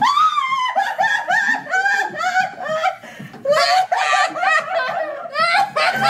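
A woman laughing in repeated high-pitched bursts.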